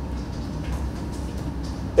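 Steady low hum of the room's background noise, with no other distinct sound.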